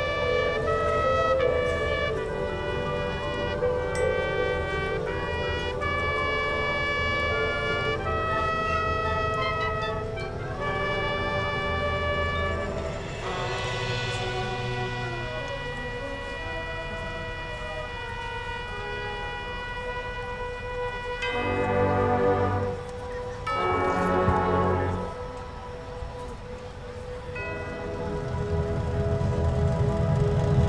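High school marching band playing its field show, winds and brass with mallet percussion. It moves through a series of held chords that change about once a second, then settles into one long sustained chord, with two loud swells near the end.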